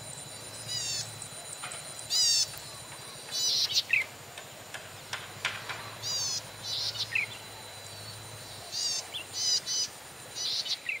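Small birds chirping in short bursts, about six phrases of quick, repeated, falling high notes, over a low steady outdoor background with a faint thin high tone.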